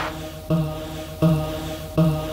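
Electronic beat music played live from a laptop and pad controller: a low droning note with overtones, restarted about every 0.7 s, under the fading tail of a crash.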